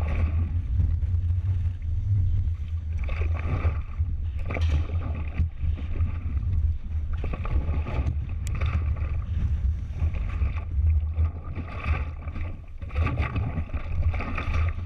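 Wind buffeting the microphone of a camera riding on a steel spinning roller coaster car, over the steady roar and rattle of the car's wheels on the track. The noise surges and fades every second or two as the car swings through the elements.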